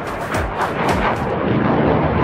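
JF-17 Thunder fighter jet flying overhead: a loud, rough jet roar with sharp crackles in the first second.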